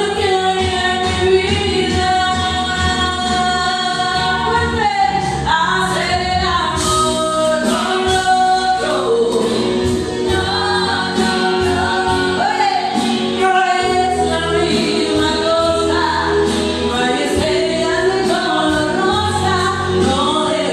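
A woman singing a Spanish-language song through a microphone over a karaoke backing track, holding long notes.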